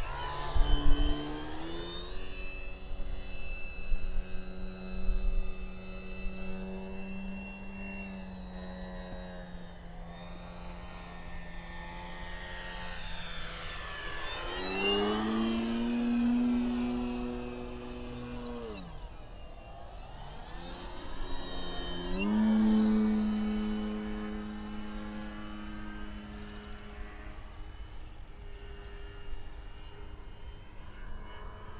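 Electric motor and 15x8 wooden propeller of an Avios Grand Tundra RC plane in flight: a buzzing tone that rises about two seconds in as the throttle opens, sags, then climbs again. It is loudest on close passes around the middle and again a little later, with pitch sweeping as the plane goes by. The pitch drops off briefly near 19 seconds as the throttle is cut. Low thumps are heard near the start.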